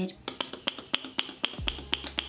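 Fingers snapping in a steady rhythm, about four snaps a second.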